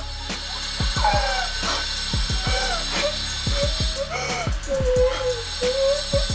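A young woman crying and wailing in several wavering cries, over dramatic background music with a low thudding beat and sustained synth tones.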